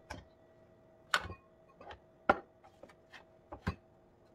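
Kitchen bowls and a ceramic mortar being handled and set down on a countertop: an irregular series of about nine sharp clinks and knocks, the loudest a little past two seconds in.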